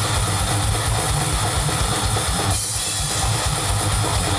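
A death metal/grindcore band playing live, with rapid kick drumming under heavily distorted guitars.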